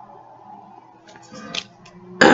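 Felt-tip pen rubbing on paper while colouring in, faint, with a few short scratchy strokes about one and a half seconds in, over a faint steady hum.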